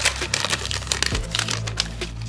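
Foil wrapper of a 2021 Panini Rookies and Stars football card pack crinkling with rapid crackles as it is torn open and the cards are pulled out. The crinkling dies down about one and a half seconds in.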